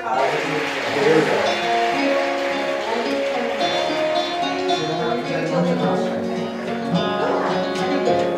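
Acoustic guitar-like plucked strings start playing a tune, settling into held chords about a second in.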